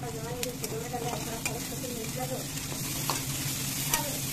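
Sliced onions and spices sizzling in hot oil in an aluminium pan while a metal spatula stirs and scrapes them, with a few sharp clicks of the spatula against the pan.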